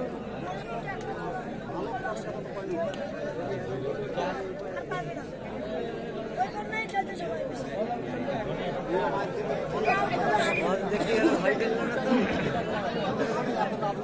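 Crowd of spectators chattering, many voices overlapping into a steady hubbub that grows a little louder in the second half.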